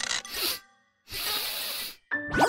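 Cartoon sound effects: a short rasping swish, a half-second gap, then a longer scraping hiss of about a second that cuts off abruptly.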